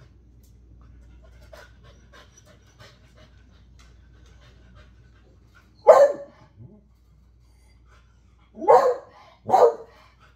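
Beagle barking three times: one bark about six seconds in, then two in quick succession near the end.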